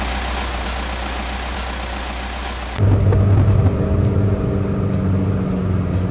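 A car moving off, a steady rushing road and wind noise that fades a little. About three seconds in, the sound switches abruptly to inside the cabin, where the engine and road noise make a steady low hum.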